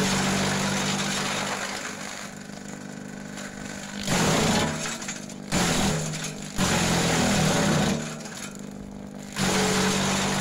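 Electric-motor garden shredder running with a steady hum, loud in repeated surges of about a second each as green leafy branches are fed in and chopped, and lighter between the feeds.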